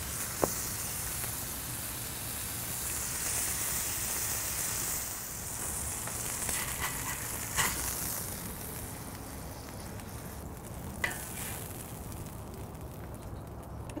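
A flipped 80/20 beef smash-burger patty sizzling steadily on a Blackstone steel flat-top griddle; the sizzle thins out in the second half. Three sharp clicks come from a metal spatula against the griddle, one just after the start, one about halfway and one near the end.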